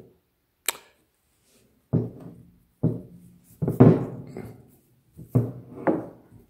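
A heavy stone being turned over by hand on a wooden tabletop: a sharp click about a second in, then a series of about five dull thunks and knocks as the rock is tipped and set back down on the wood.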